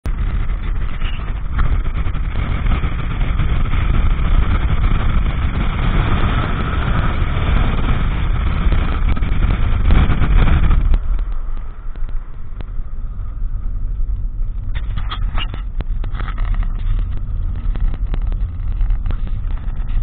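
Car driving on a gravel road: a steady rumble of tyres and road noise, loud in the first half. About halfway through it drops suddenly to a quieter rumble inside the cabin, with scattered clicks and rattles.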